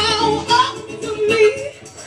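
A live band playing with a voice singing the melody. The sound dips briefly just before the end.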